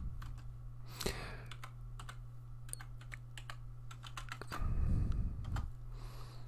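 Typing on a computer keyboard: irregular runs of quick key clicks. A low muffled rumble comes about five seconds in.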